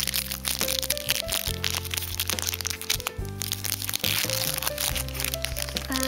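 Foil Pokémon booster-pack wrapper crinkling and crackling as it is handled and opened in the fingers, a dense run of small crackles. Background music with sustained chords plays underneath.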